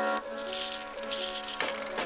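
Handful of small 1x1 round plastic Lego plates rattling and clattering against each other as they are stirred and tipped out of a hand, over background music.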